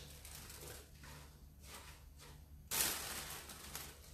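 Faint rustling of baby spinach leaves being pushed down into a food processor bowl by hand, with one louder rustle about three seconds in.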